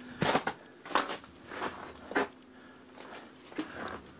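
A handful of scattered knocks and scuffs, about one a second, of someone moving about and handling things in a cluttered wooden shed.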